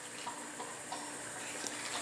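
Steady, low background hiss with a faint constant hum: room noise, with no distinct handling sounds standing out.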